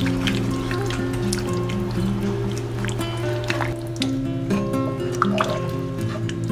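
Background music with held, changing notes, over wet liquid sounds and soft clicks from a wooden spatula stirring curry roux into the broth in a saucepan.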